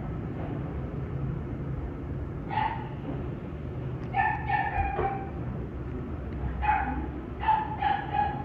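A small dog yipping in short, high-pitched yelps: one alone, then a quick run of three, then three more near the end. A steady low hum runs underneath.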